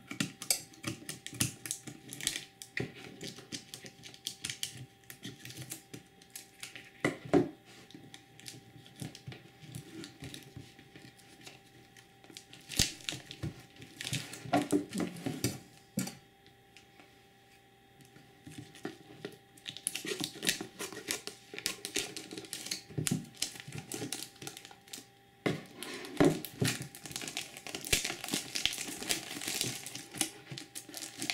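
Plastic shrink wrap on a cardboard card box crinkling and tearing as it is cut with scissors and peeled away, with a quiet pause of a couple of seconds a little past halfway.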